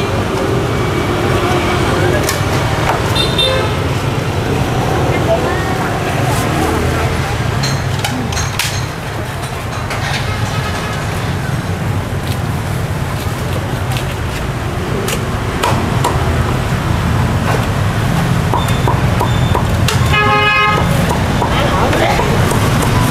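Meat cleaver chopping crisp-skinned roast pork on a thick wooden block, in scattered sharp strokes over a steady rumble of street traffic. A vehicle horn honks near the end.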